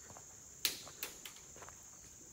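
Steady high-pitched chorus of crickets, with a few short crunches or knocks from footsteps, the loudest about two-thirds of a second in.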